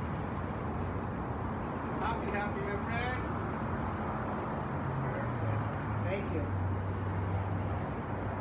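Steady background noise with faint, indistinct voices a few times, and a low steady hum that comes in about five seconds in.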